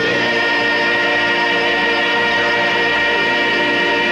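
Male singer and choir holding one long sustained note, a steady chord throughout.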